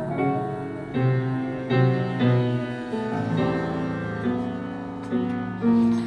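Piano accompaniment playing a slow series of sustained chords, a new chord struck every half second to a second, in the closing bars of a ballad.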